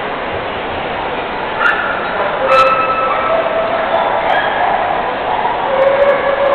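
Dogs barking and yipping over the steady background noise of a crowd in a large hall. There are a few short sharp barks about two and a half seconds in, and more calls near the end.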